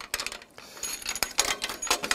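Light metallic clicks and clinks as a stabiliser clamp is fitted onto the round upright of an aluminium scaffold tower, with a faint high ringing from the metal parts.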